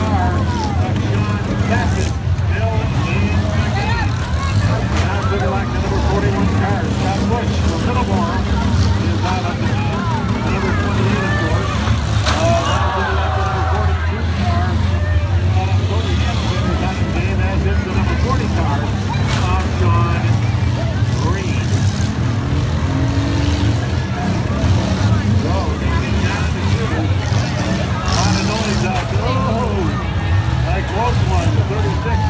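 Engines of several small four-cylinder and V6 demolition derby cars running and revving in a steady drone. A crowd is shouting and cheering close by. A few sharp bangs, from cars ramming each other, cut through.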